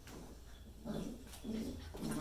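Two cream-coloured retriever puppies play-fighting, with two short low growls from them about a second and a second and a half in.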